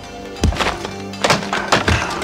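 Arms and hands striking the wooden arms and trunk of a wing chun training dummy, a few sharp wooden thunks, over background music.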